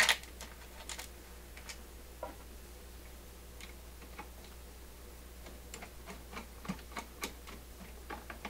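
Light, scattered clicks and taps of small metal screws and a metal control-panel plate being handled and fitted against a wooden record-player cabinet, over a steady low hum.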